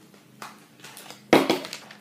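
A fidget spinner fumbled during an attempted trick: a faint click, then one sharp knock about a second and a third in with a short rattle after it, as the trick fails.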